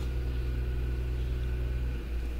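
Steady low hum with a faint buzz of even tones, unchanging throughout: background noise on the recording between the narrator's words.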